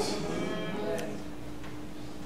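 A steady low held tone under a pause in the preaching, with faint murmuring early on and a small click about a second in.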